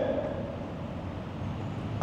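A pause in a man's speech, leaving only a steady, even background noise with no distinct event.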